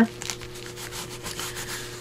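Hands rubbing and smoothing paper, pressing a freshly glued paper pocket flat onto a journal page: a soft, even, scratchy rustle.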